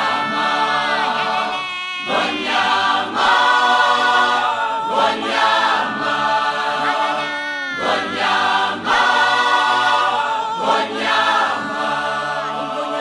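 Background music: a choir singing in phrases a few seconds long, many voices holding and sliding between notes.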